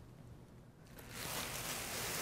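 Silence for about the first second, then faint steady room noise.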